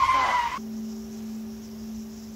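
A high-pitched shouted exclamation from the drama cuts off about half a second in. A steady, low held note of the background score follows and lasts to the end.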